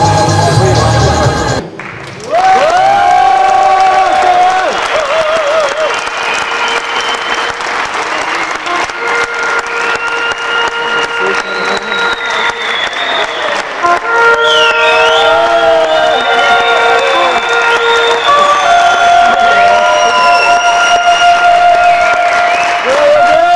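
Arena crowd applauding and cheering over music. A track with a strong bass beat stops about two seconds in, and held, gliding melodic notes then carry on over the crowd noise.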